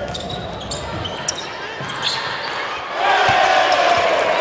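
Game sound of a basketball game in an arena: the ball bouncing on the hardwood court, with voices in the hall. The sound grows louder about three seconds in.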